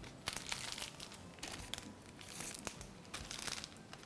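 Crinkling rustle of packaging being handled off-camera while a 20 gauge floral wire is fetched, in several clusters of short strokes.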